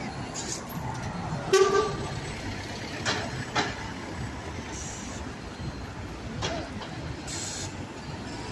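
City street traffic, with a red double-decker bus pulling away close by and other vehicles passing. About a second and a half in there is a short, loud, toot-like tone.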